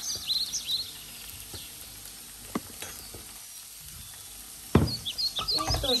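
Sliced cucumber sizzling quietly in oil in a non-stick frying pan, with a few light spatula clicks. Near the end a loud knock and a low thud as the pan is handled and lifted off the gas hob.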